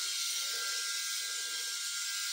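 Electric rotary head shaver running steadily with an even whir as it is moved over the scalp, shaving stubble dry.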